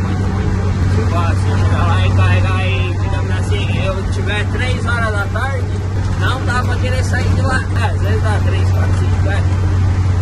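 A man talking in Portuguese over the steady low drone of a truck's engine, heard inside the cab.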